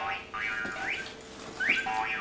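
Baby jumper's electronic toy station playing a tune in short steady notes, with two quick rising slide-whistle effects about a second apart.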